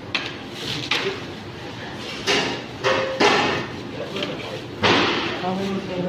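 Indistinct voices with several sudden bursts of clatter or knocking, the loudest about two and five seconds in.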